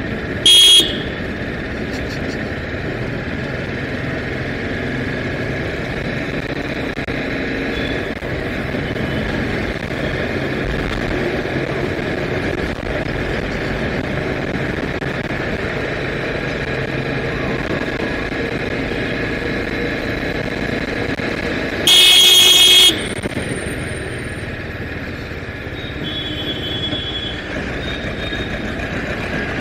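TVS Apache RR 310's single-cylinder engine running steadily under way with road and wind noise, while a vehicle horn sounds loudly twice: a short blast right at the start and a longer blast of about a second roughly three-quarters of the way through.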